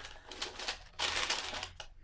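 Paper packaging rustling and crinkling as a ribbon-tied box is undone and opened, growing louder and busier about a second in.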